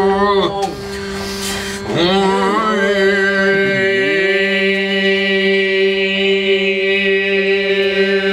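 Two men singing a slow chant together over a steady held drone note, the melody gliding up and down above it. About a second in there is a brief noisy hiss across the high range.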